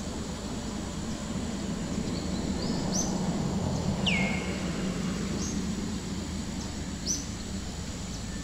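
Outdoor ambience: a steady low rumble with short, high bird chirps every second or two, and one louder falling call about four seconds in.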